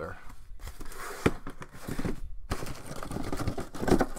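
Cardboard scraping and rustling as sealed hobby boxes are slid out of a corrugated cardboard shipping case, with a sharp knock about a second in and a louder knock near the end as a box is set down on the stack.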